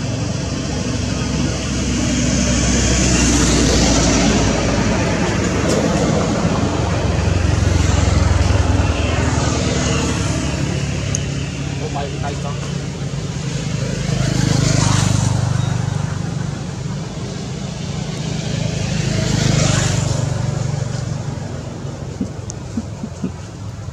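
Outdoor background noise: a steady rumble like road traffic that swells and fades several times, as if vehicles are passing, with indistinct voices in it.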